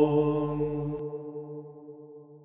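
The last held note of a Byzantine chant (apolytikion): a low voice sustaining one steady pitch and fading away. Its brighter upper part stops about halfway through.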